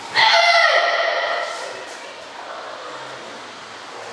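A boy's loud, high-pitched karate kiai shout right at the start, held for about a second and then fading.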